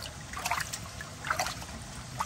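Water trickling and splashing in a shallow pool as hands and a large catfish move in it, with short splashes about half a second and a second and a half in.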